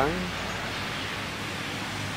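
Steady outdoor background noise, an even hiss with no distinct events, after a man's word trails off at the start.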